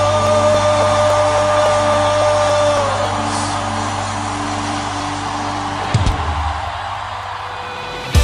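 Worship band music at the change between two songs: a held keyboard chord rings on and fades into a soft wash, then a single deep, falling bass boom about three-quarters of the way through marks the start of the next song.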